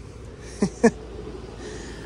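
A man's brief chuckle: two short breathy snorts close together, about half a second and just under a second in, over a steady low background rumble.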